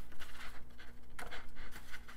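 Paper rustling as hands handle and smooth a fold-out page of a comic booklet: a few soft brushes and crinkles, over a faint steady hum.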